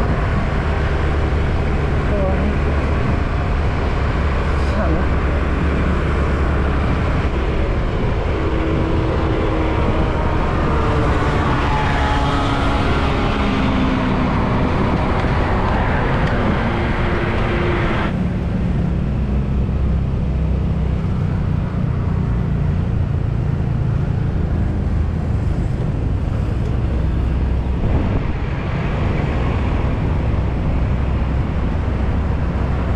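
Yamaha Grand Filano Hybrid scooter's 125 cc single-cylinder engine running steadily on the move, with wind and road rush on the camera and passing traffic. The higher rushing noise drops away suddenly a little past halfway, leaving mostly the low engine drone.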